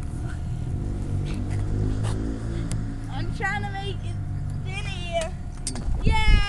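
Low steady rumble while riding a spinning playground roundabout, with two short high-pitched vocal squeals from a rider, about three and five seconds in.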